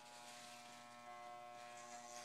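Electric hair clippers running, a faint steady buzz that gets slightly louder and fuller about a second in.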